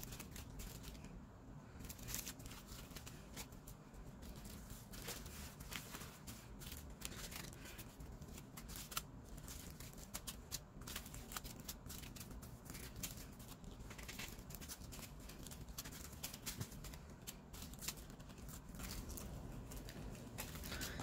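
Small plastic zip-lock bags of diamond-painting drills being picked up, shuffled and set down: faint, irregular crinkling and rustling of thin plastic with small clicks, going on throughout.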